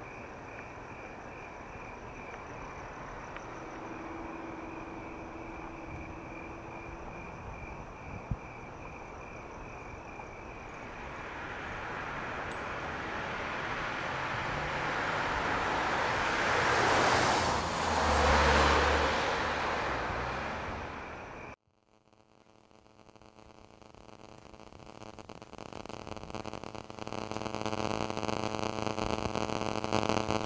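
A car approaches and passes on the road, its noise rising to a peak and falling away, over crickets chirping. About three-quarters of the way through, the sound cuts off abruptly and a droning tone swells in.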